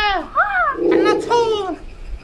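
A very high-pitched voice in a string of short syllables that each rise and fall, about three a second, too squeaky for the words to be made out.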